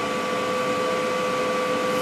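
Cooling fan of a Longevity ProMTS 200 inverter welder running steadily with the machine switched on and idle: an even whir with a faint, steady hum.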